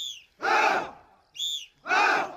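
A group of soldiers shouting together in unison twice, each shout answered to a short high-pitched call from the leader in front of them.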